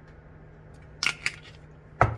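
Two short crunchy, squishy noises about a second in, as a hand handles oiled raw potato slices in a metal dish.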